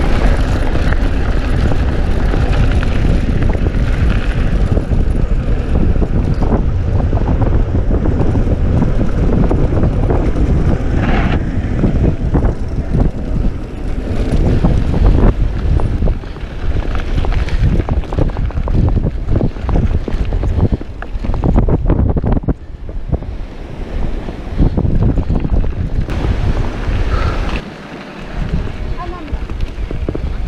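Wind buffeting the microphone over the rumble of mountain-bike tyres on a gravel dirt road, with many small knocks and rattles as the bike rides over bumps.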